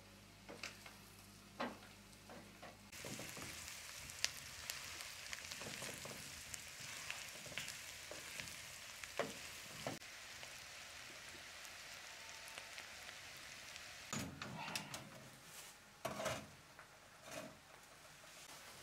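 Chicken livers with green peppers and onions sizzling in a frying pan on a wood-burning stove: a steady crackling hiss that starts suddenly about three seconds in. Near the end it gives way to a few knocks.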